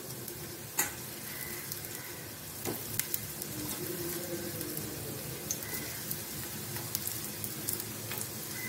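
Chickpea kababs shallow-frying in oil in a pan: a steady sizzle with scattered sharp pops and crackles from the hot oil.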